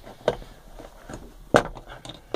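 Plastic control-panel cover of a Thetford cassette toilet being prised off by hand: a few small clicks, then a louder snap about one and a half seconds in as it comes loose.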